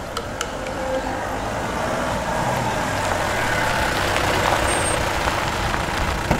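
Mahindra Bolero police jeep's engine running steadily, growing slightly louder.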